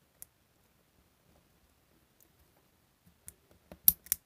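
Small plastic clicks as a needle electrode tip is pushed into the socket of a disposable electrosurgery pen, with a sharper click near the end as the tip seats in the socket.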